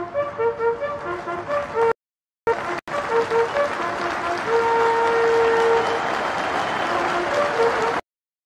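Two Royal Marines buglers sounding a ceremonial bugle call in unison: a run of short notes, then a long held note about halfway through, with a steady rushing noise underneath. The sound drops out briefly about two seconds in.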